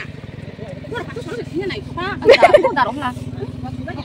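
People talking over the steady low hum of a small engine running.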